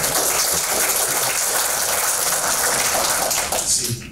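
Audience applauding steadily, dying away near the end.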